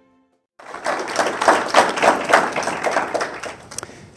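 Audience applauding: dense clapping that starts abruptly about half a second in and dies away near the end.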